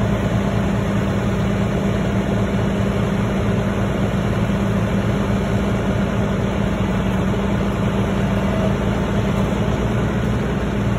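Heavy-duty wrecker's diesel engine running steadily at a constant speed, powering the winch that is pulling on its cable.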